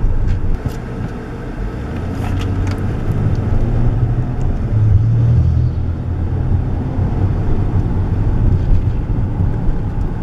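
Car driving along a city street, heard from inside the cabin: a steady low rumble of engine and tyre noise, with a few faint clicks in the first three seconds.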